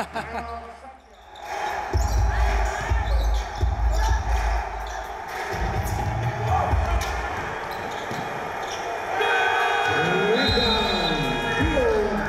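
A sharp bang as a dunk hits the rim at the very start, then a basketball bouncing on a hardwood court. Background music with steady tones comes in about nine seconds in.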